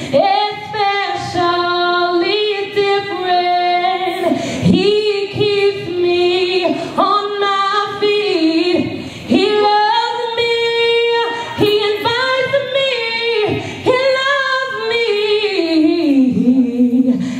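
A woman singing solo into a microphone, holding long notes and sliding between pitches.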